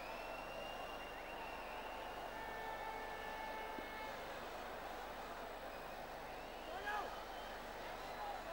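Cricket stadium crowd ambience: a steady murmur of many distant voices, with a few thin high tones held for a second or two in the first half and a single voice rising out of the crowd near the end.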